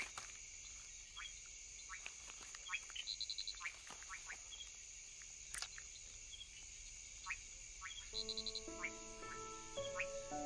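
Faint night chorus of frogs: short rising chirps scattered throughout over a steady high-pitched hiss, with a quick trill of clicks heard twice. Soft sustained music chords come in near the end.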